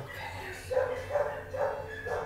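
A dog barking repeatedly in the background, in a run of short barks in quick succession over the second half.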